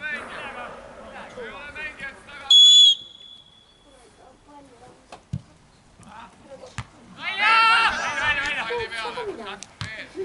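Referee's whistle blown once, a single steady blast of about half a second, a quarter of the way in, signalling the set piece. A ball is kicked with a sharp thud a couple of seconds later, and players' loud shouts follow near the end.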